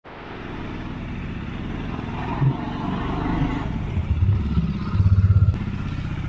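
Bajaj Dominar 400's single-cylinder engine running at low revs, with a few brief louder rises, the longest about five seconds in.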